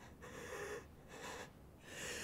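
A young man's heavy breathing, about three quick, even breaths in and out: a wounded character concentrating on controlled breathing to stop internal bleeding from a torn blood vessel.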